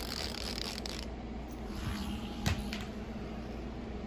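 Rustling handling noise in the first second, then a single sharp click or tap about two and a half seconds in.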